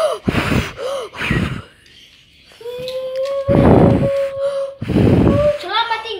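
A boy making sound effects with his mouth for a racing toy robot car: short breathy whooshes, a brief pause, then one long steady hummed note of about three seconds with more whooshes over it.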